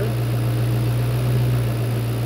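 2009 Ford Mustang GT's 4.6-litre SOHC V8 idling steadily under an open hood, a smooth, even low hum.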